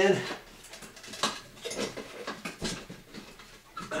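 Metal tabs of a cut-in recessed can light housing being pushed up into the ceiling hole, giving a run of irregular light metallic clicks and knocks.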